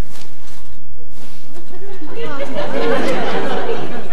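Studio audience laughing, many voices at once, swelling up about halfway through and dying away near the end. Faint rustling and knocks come before it.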